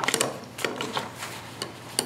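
Waxed linen bookbinding thread drawn up through the stitching hole of a paper journal, a faint rasping pull with a few quick ticks at the start and small paper-handling sounds.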